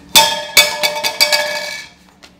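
A metal bell struck several times in quick succession, each strike ringing with clear overlapping tones, fading out near the end.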